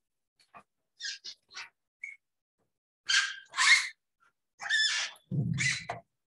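A dog barking: about seven short barks in small groups, with a low rumble near the end.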